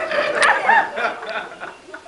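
A group of people laughing in short, high-pitched bursts that die down toward the end.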